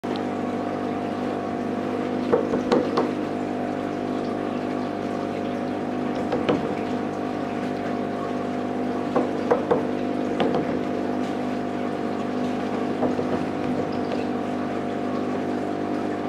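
Aquarium air pump humming steadily, with the air stone bubbling in the tank. A few brief clicks break in now and then.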